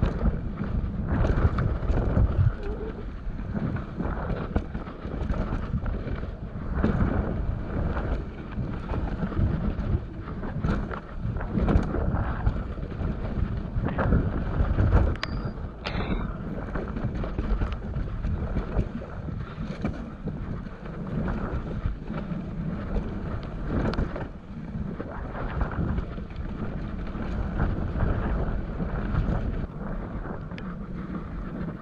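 Wind rushing over the microphone and mountain-bike tyres rumbling over a dirt singletrack, with frequent knocks and rattles as the bike rolls over bumps, roots and rocks.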